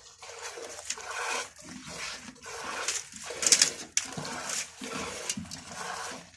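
A goat being milked by hand: repeated streams of milk squirting into a plastic bucket already holding milk, each squirt a short hiss.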